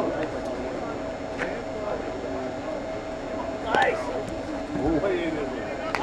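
Men's voices calling out across a softball field, overlapping and indistinct, over a steady faint tone, with a few brief knocks, the loudest about four seconds in.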